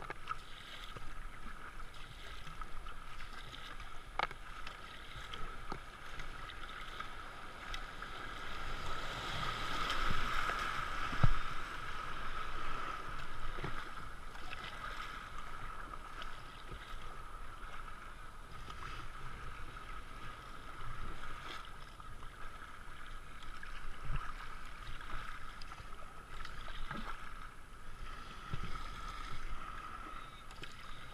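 Kayak paddle strokes splashing and river water rushing past the hull. The rushing swells louder about a third of the way in, through a riffle of rough water, with one sharp knock at its height and a few lighter knocks elsewhere.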